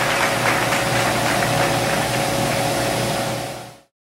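A steady rushing noise with a constant hum fades out a little before the end and gives way to dead silence.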